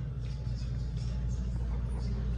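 Steady low rumble of a child-size wire shopping cart's small wheels rolling over a store floor, with background music playing.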